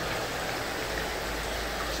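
Steady rush of water circulating and splashing in shallow saltwater coral grow-out tanks.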